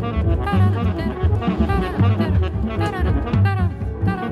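A modern jazz recording playing: a tenor saxophone melody over bass, piano and drums, with a steady, pulsing bass line.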